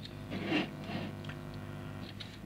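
Quiet room tone with a steady low hum. About half a second in comes a brief soft handling noise as a small toy car is picked up and moved by hand.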